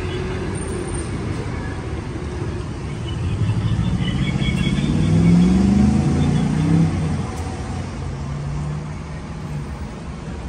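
A motor vehicle passes on the street, its engine note rising as it accelerates and loudest around the middle, over a steady low traffic rumble.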